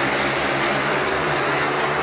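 Three 500 cc single-cylinder speedway motorcycles racing, their engines blending into one steady drone.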